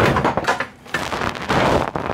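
Metal frame of a folding seat clattering and scraping against other stored items as it is lifted and pulled free from a pile, in several irregular knocks and rattles.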